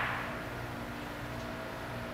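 Steady low hum of a large industrial shop, with a few faint steady tones running through it. At the very start the tail of a loud, sudden hiss fades away.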